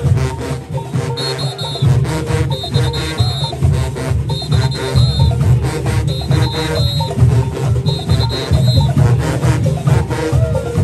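Junkanoo brass section of sousaphones, trumpets and trombones playing a loud, driving tune over a heavy low beat. A short high figure repeats about every second and a half.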